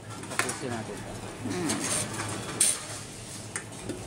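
Aluminium drink cans being fed one by one into a T-710 reverse vending machine for bottle and can returns, with a few sharp metallic clanks as cans are pushed in and taken by the machine. The loudest clank comes a little past halfway.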